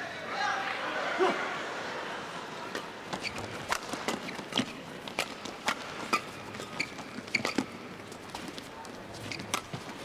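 Badminton rally heard in an arena hall: sharp racket-on-shuttlecock hits in quick succession, starting about three seconds in, with players' shoes squeaking on the court floor. Crowd voices murmur at the start.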